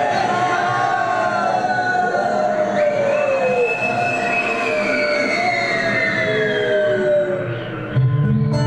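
Several long, overlapping wailing tones that slide slowly up and down in pitch, like a siren, with no beat under them. They fade briefly near the end.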